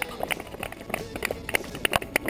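Quick, irregular clicks and taps of running footsteps and trekking-pole tips on pavement, mixed with scattered hand clapping from onlookers.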